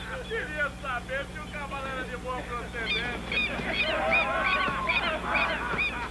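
A flock of birds calling at once: many short, overlapping rising-and-falling calls that grow louder and denser about halfway through, over a steady low hum.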